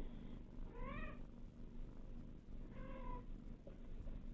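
Kitten mewing twice, two short high mews about two seconds apart, the first rising then falling in pitch.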